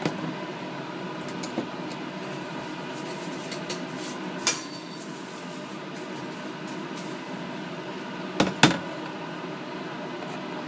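Steady fan hum, with a few light clicks and knocks of plastic culture vessels and metal forceps being handled and set down, the loudest about four and a half and eight and a half seconds in.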